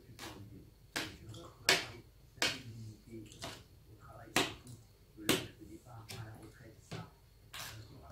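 Metal fork and knife clicking against a plate while cutting and picking at salad: about eight sharp clicks, roughly one a second.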